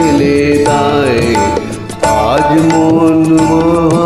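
Instrumental backing track of a Bengali song in a karaoke recording: sustained tones over a regular percussion beat, with sliding melodic lines. The music dips briefly and comes back suddenly about halfway through.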